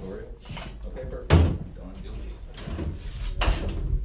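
A heavy thump about a second in, the loudest sound, and a second, softer knock later on, with quiet talk between.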